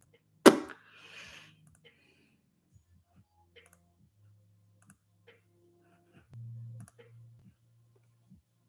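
Single computer mouse clicks, sparse and irregular, a dozen or so. A loud sharp thump about half a second in, and a short low hum just before the end.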